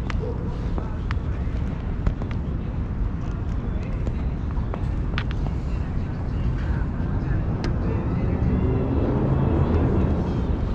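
Outdoor city street noise: a steady low rumble of traffic and wind, with indistinct voices and scattered clicks.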